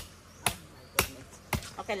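Machete blows chopping into a green coconut held on a wooden stump: sharp, evenly spaced strikes about two a second, four in all.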